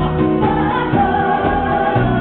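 A male and a female singer singing together in a live soul duet over a band's accompaniment, with long held, wavering notes.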